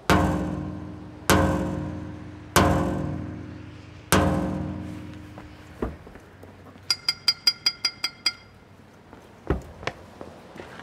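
A clanking paddle strikes a metal street cabinet four times at uneven intervals, each clang ringing on and dying away slowly. A smaller knock follows, then a quick run of about ten short high pings, and a thump near the end.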